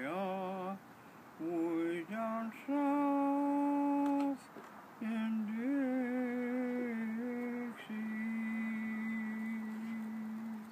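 An elderly man humming a tune without words, a string of held notes with short gaps between them, ending on one long steady low note.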